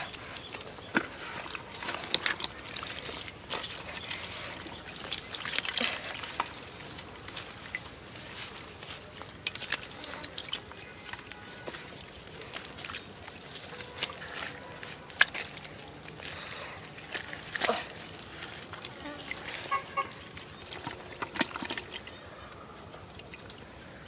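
Hands groping and scooping through shallow muddy water with small fish, making scattered wet splashes and slaps.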